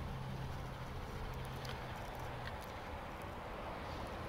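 Faint outdoor background noise with a low steady hum that fades out about two and a half seconds in, and a few soft ticks.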